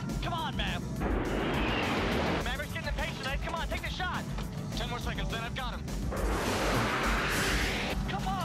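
Movie sound mix of F-14 Tomcat jet engines: a rush of jet noise swells about a second in and again, longer, near the end, over a music score and clipped voices.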